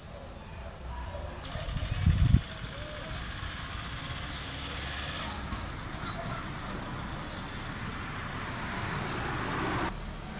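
Steady road traffic noise, a vehicle passing and swelling a little near the end. A brief low thump about two seconds in.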